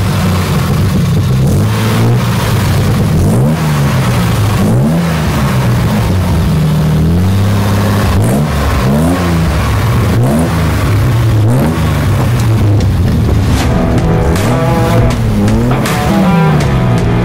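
1976 Triumph TR6's straight-six engine revved through a free-flow dual exhaust: a run of throttle blips, each rising and falling within about a second, over a steady idle.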